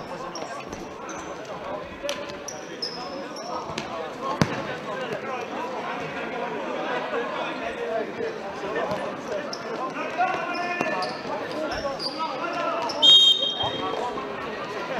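Futsal ball play in a sports hall over steady spectator chatter: short high squeaks and a sharp ball strike about four seconds in. Near the end comes a brief, shrill whistle blast, the loudest sound.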